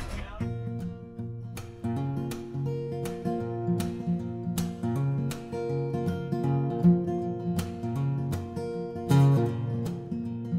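Acoustic guitar music: a steady instrumental of strummed chords over plucked bass notes, in an even rhythm.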